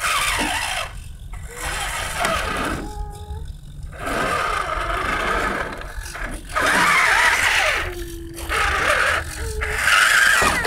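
Radio-controlled RC4WD Trailfinder 2 scale crawler's electric motor and geared drivetrain whining in short stop-start bursts as it climbs, with its tyres scrabbling on loose rock.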